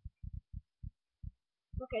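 About six short, dull low thumps at uneven intervals, closely spaced at first and then sparser.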